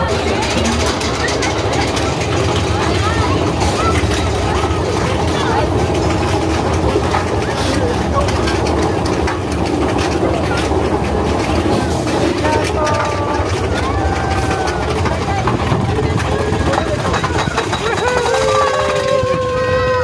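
Big Thunder Mountain Railroad mine-train roller coaster running along its track at speed: a steady loud rumble and rush of air, with riders' voices shouting and cheering, more of them near the end.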